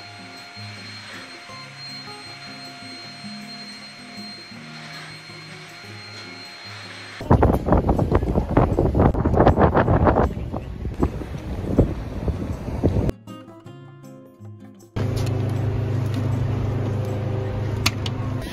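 Soft background music, then about seven seconds in a loud rough rush of wind on the microphone with street noise, and from about fifteen seconds a steady low hum.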